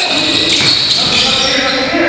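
Live sound of an indoor basketball game in a large gym: players' voices and a ball bouncing on the hardwood court.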